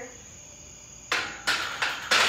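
Empty steel barbell being set back onto a power rack's hooks: after a second of quiet, three sharp knocks and rattles about a third of a second apart.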